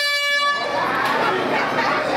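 A single short horn blast at one steady pitch, cutting off about half a second in, marking the end of the round; crowd shouting and chatter carry on after it.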